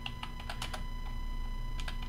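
Computer keyboard being typed on: a run of individual key clicks, most of them in the first second, then a couple more near the end.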